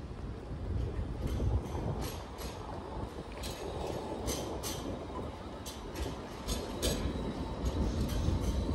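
Sydney light-rail tram running past close by: a steady low rumble with a run of sharp, irregular clicks.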